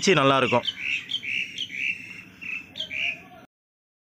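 A small bird chirping in a quick series of short notes, about eight in under three seconds, after a brief spoken word. The sound cuts out abruptly near the end.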